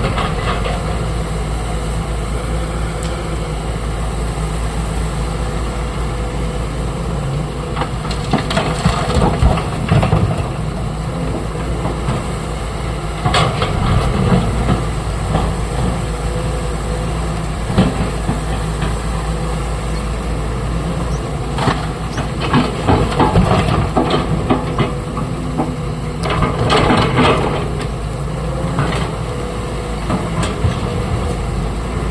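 A SANY crawler excavator's heavy diesel engine running steadily while its bucket digs into broken rock and drops loads into a dump truck's steel body, with several bursts of rock scraping and clattering.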